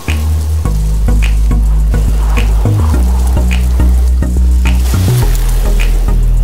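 Loud background music: a deep bass line that steps between notes under a steady beat of roughly one hit a second, with a hissy, crackly texture.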